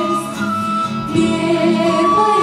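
Acoustic guitar and violin playing a song together live, the singing weaker here than in the sung lines around it.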